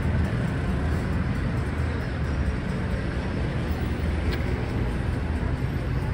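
Steady low rumble of city street traffic and running vehicle engines.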